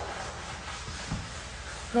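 Soft cleaning sponge wiping a glass-ceramic stovetop: a faint, steady rubbing.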